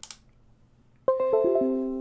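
Computer system chime as the USB camera is detected and its driver installs: a run of about five notes falling in pitch, starting about a second in, each ringing on under the next.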